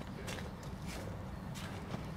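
Faint, even footsteps on a gravel path strewn with fallen dry leaves.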